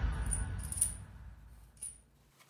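Electronic dance music fading out over the first second and a half, with three light metallic clinks as a steel cap screw is handled and fitted into a freshly drilled through hole.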